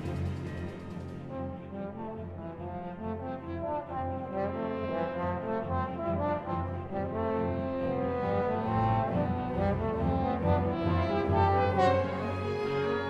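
Two solo trombones playing sustained lines with a symphony orchestra in a trombone concerto, full brass and string texture over a heavy low end, growing louder through the second half.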